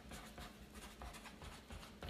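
Faint scratching of handwriting on paper: a short note being jotted down in quick, irregular strokes.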